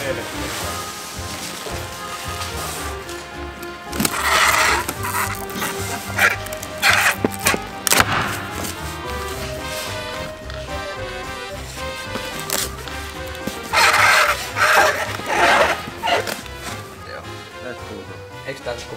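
Background music, with several short, loud strips of packing tape pulled off a tape dispenser onto a cardboard box, about four seconds in, around seven and eight seconds, and again in a cluster near fourteen to sixteen seconds.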